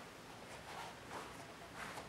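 Faint rustling of taekwondo uniforms and soft bare-foot steps on a foam mat as a partner gets up off the floor and both return to their starting stance.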